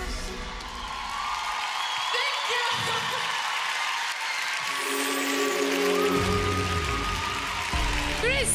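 Studio audience applauding and cheering with whoops as a song ends. About halfway through, held notes of music come in under the applause.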